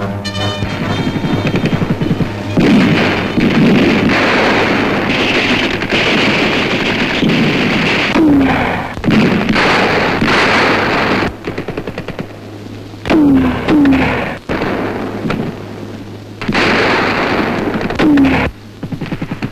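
Sustained bursts of rapid machine-gun fire with explosions on a military firing range, stopping and starting abruptly several times. A few short falling whines cut through, over a steady low hum.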